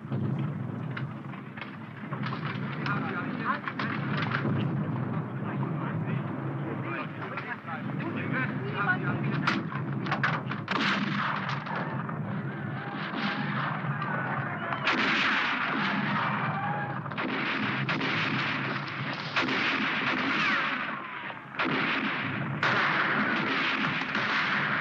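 Film-soundtrack firefight: a sustained run of gunshots, many in quick bursts, over a steady low drone.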